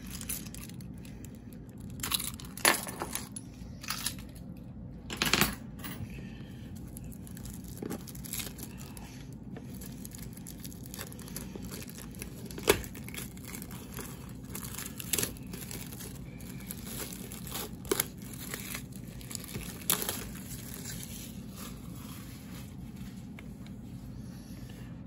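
Plastic shrink wrap on a boxed Blu-ray set being slit with a key and torn off, in scattered short bursts of tearing and crinkling.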